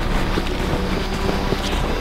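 Wind buffeting the microphone: a steady rushing noise with no clear pattern.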